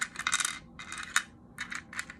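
Small wooden letter tiles being picked up, slid and set down on a hard tray by hand: a run of light clicks and scraping taps, with one sharp click just past a second in.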